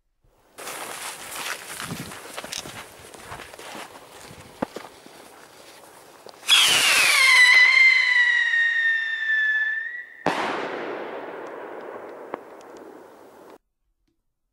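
A 1990s WECO Turbo-Salut salute rocket going off. It crackles and spits for about six seconds, then climbs with a loud whistle that falls in pitch. It ends in one sharp, loud bang about ten seconds in, which echoes away: a full salute report.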